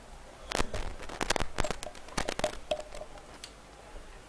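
Microphone stand being handled and repositioned: a string of irregular clicks and knocks picked up through the microphone.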